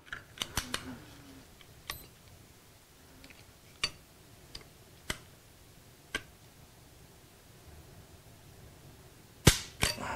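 Faint scattered metallic clicks as a trigger-pull force gauge is worked against a pistol's trigger, then a louder double click near the end as the cocked pistol's trigger releases.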